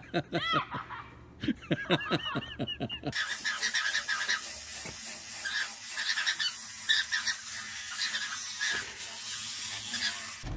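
A person laughing in quick bursts for about three seconds, then a toothbrush scrubbing against teeth in an irregular, scratchy rhythm.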